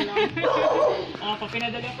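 Excited women's voices and laughter, with a rough, noisy outburst about half a second in.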